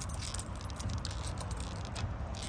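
A bunch of keys on a keyring jangling in a hand, with many small irregular metallic clinks, over a low steady rumble.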